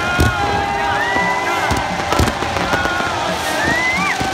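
Fireworks going off around a stadium: a string of sharp bangs and launches, the loudest near the start and about two seconds in, over music and crowd noise.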